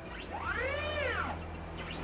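A single pitched tone that glides up and then back down over about a second, faint under a steady low hum.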